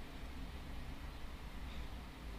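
Faint steady background hiss with a low rumble, with no distinct sound: room tone during a pause.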